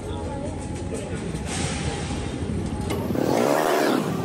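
Street noise with a car's engine running close by, growing louder in the last second, with voices in the background.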